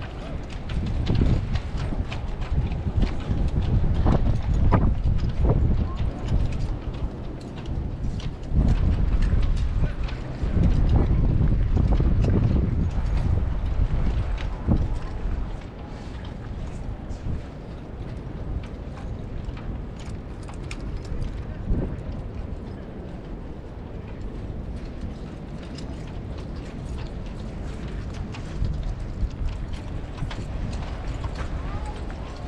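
Cavalry horses' hooves clip-clopping now and then on a gravel parade ground as the mounted troopers' horses stand and shift, with voices in the background. A low rumble is strongest in the first half, then drops away about halfway through.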